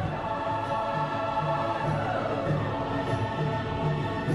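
Children's choir singing sustained lines in unison with orchestral accompaniment, over a steady pulsing low beat.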